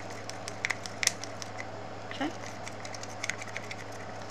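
Scattered light clicks and ticks of small plastic mixing cups and a stir stick handled in gloved hands while mixing tinted resin, over a steady low hum.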